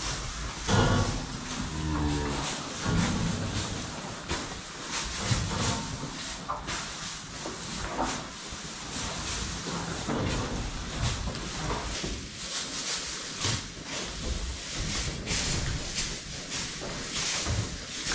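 Holstein heifers mooing several times, in short calls, over scattered rustling and knocking of straw and pen gear.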